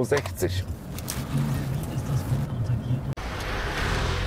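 Taxi car heard from inside the cabin, a low steady engine hum with a faint noise of the car around it. It cuts off abruptly about three seconds in and gives way to a steadier rushing noise from the car.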